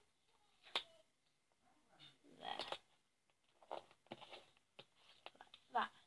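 Sticker and card handling on a desk: a sharp tap about a second in and scattered faint rustles and ticks of paper and card.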